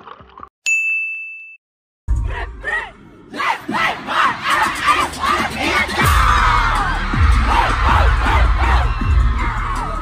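A single bell-like ding rings out and fades about half a second in. After a moment of silence, a live concert recording comes in: bass-heavy pop music over a crowd of fans screaming and cheering.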